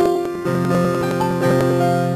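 Instrumental keyboard music: slow held chords, with new chords struck at the start, about half a second in and again past the middle.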